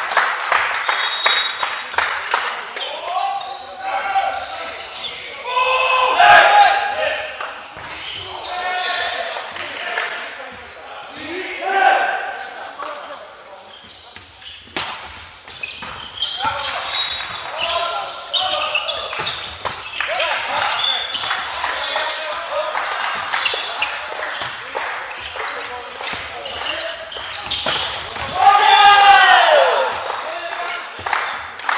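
Volleyball being played in a large hall: sharp ball strikes from serves, passes and spikes ring through the hall, mixed with players' shouted calls.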